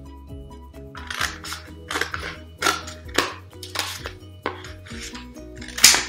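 Scissors cutting through shoebox cardboard in about six crunching snips, the loudest near the end. Background music plays throughout.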